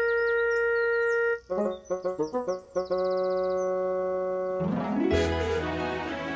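Instrumental background music from the show's score. A long held note gives way to a run of short plucked notes and then another held chord, and a burst of hiss comes in near the end.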